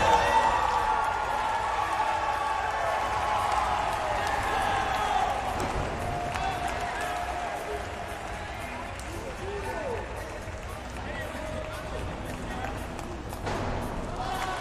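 Arena crowd hubbub: many voices talking at once in a large reverberant hall, louder at first and growing quieter through the rest.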